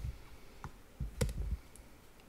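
A few separate clicks from a computer keyboard and mouse, the loudest about a second and a quarter in.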